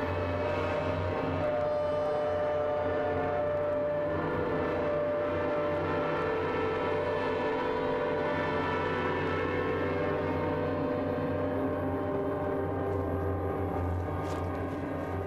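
Background music score of held, layered tones: a steady drone with no beat, the notes shifting slowly.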